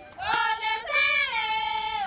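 Maasai women singing a farewell song together, unaccompanied. High voices come in about a quarter second in and hold long, gliding notes.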